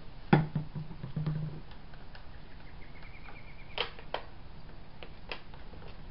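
Sharp clicks and taps of plastic bottles being handled while paint is mixed: one loud click about a third of a second in with a short low buzz after it, then a few lighter clicks near the end.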